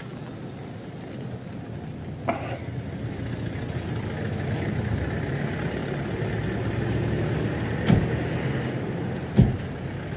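A 1930s car engine running as the car pulls up, growing louder over the first several seconds. A sharp knock comes near the end, then a low thud like a car door shutting.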